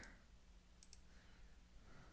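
Near silence, with two faint clicks close together a little under a second in, from a computer mouse.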